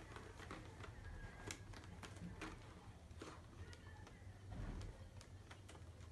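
Faint, scattered clicks and light taps of a toy's cardboard-and-plastic packaging being handled and pulled at by hand, over a low steady hum.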